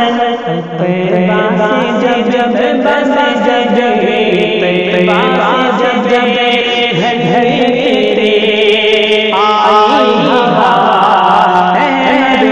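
Male voice chanting a devotional Urdu kalam (naat-style manqabat) in a slow melodic line, layered with other voices over a steady low drone.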